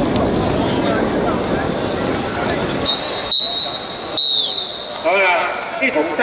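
Football referee's whistle: a long steady high-pitched blast about three seconds in, then a short one that falls off at the end. Men's voices and chatter come before and after it.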